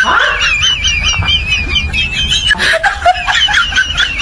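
A high-pitched, rapidly wavering scream of 'ahh', sounding sped-up and comic. It breaks off about two and a half seconds in and starts again.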